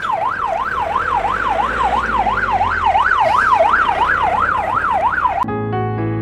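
Police vehicle's electronic siren in a fast rising-and-falling wail, about two and a half sweeps a second. It cuts off abruptly about five and a half seconds in as piano music begins.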